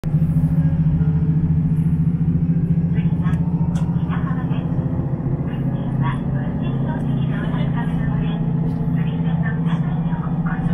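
Steady low drone of a KiHa 54 diesel railcar's engine while the train is moving, heard from inside the passenger cabin.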